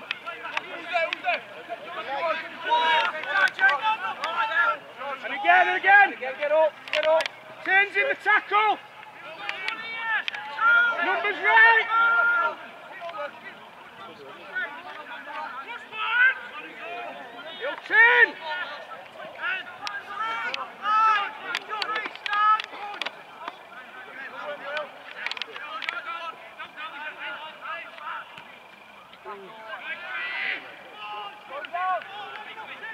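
Unintelligible shouts and calls from rugby league players and touchline onlookers during open play, coming in bursts, loudest in the first twelve seconds and again about eighteen seconds in.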